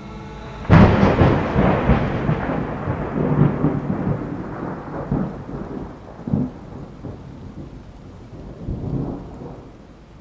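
A thunderclap with rain: a sharp crack under a second in, then a long rolling rumble that swells again a few times as it fades away.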